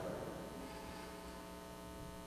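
Steady electrical mains hum, a stack of evenly spaced tones holding level and pitch.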